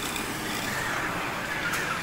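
Steady background noise of a busy supermarket: a continuous hum and hiss with no distinct events.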